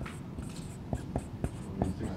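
A pen writing on a board: a run of short taps and scratchy strokes, most of them in the second half, as an equation is written out.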